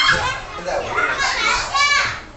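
A group of young children chattering and shouting at play, their voices high-pitched, with a shrill rising cry near the end.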